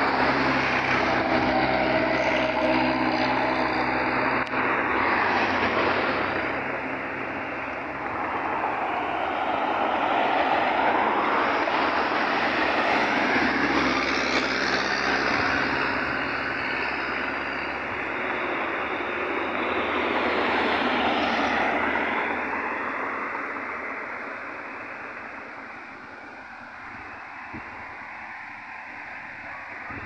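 Road traffic passing close by on a paved highway, a loud rush of engines and tyres. It swells as vehicles go by about ten seconds in and again about twenty seconds in, then fades toward the end.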